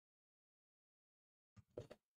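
Complete silence, the audio cut off entirely, then about a second and a half in a brief, broken snatch of a voice as the sound comes back.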